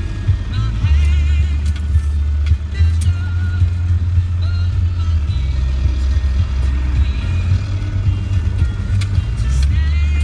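Land Rover Defender 90 cab at low speed on a rough track: a loud, steady low drone of engine and drivetrain whose level shifts a few times.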